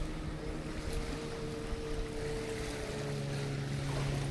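Waves washing on a lake beach and wind buffeting the microphone, with a steady low hum of several held tones beneath.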